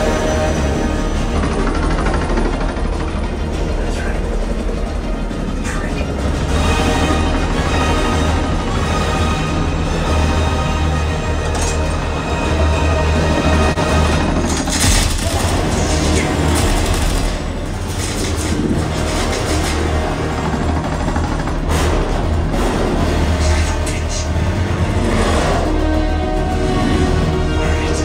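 Action-film soundtrack, music with some dialogue over strong, continuous deep bass, played loud through a home theater's tower speakers and subwoofer and heard in the room.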